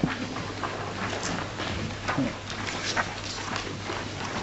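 Handling noises: a scatter of light clicks and rustles, with a brief low sound about two seconds in, over a steady low hum.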